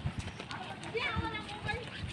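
Voices of people talking outdoors, with a brief higher-pitched voice about a second in, over soft irregular low thumps.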